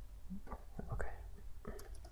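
Low steady hum with a few faint clicks and soft breaths or mouth noises close to the microphone, while a new line is opened with the computer keyboard in the code editor.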